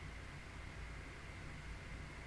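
Steady background hiss with a low hum and a faint high tone, no distinct events: the noise floor of a desk microphone.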